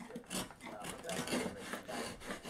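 Hand chisel paring waste out of a through dado in a softwood board: a few short, faint scraping cuts as the edge shears the wood fibres.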